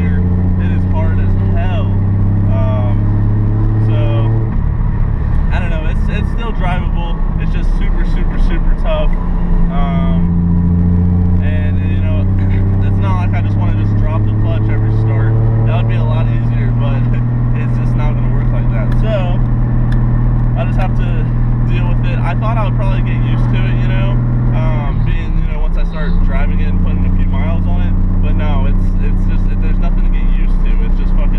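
Nissan 240SX engine running while the car is driven, heard from inside the cabin under a man's talking. Its steady drone breaks off and changes pitch about four and a half seconds in and again about twenty-five seconds in.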